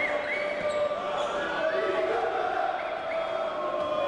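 Basketball being bounced on a hardwood court by a player at the free-throw line, a few faint thuds under the steady noise of an arena crowd's voices.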